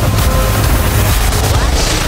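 Loud background music with a heavy bass.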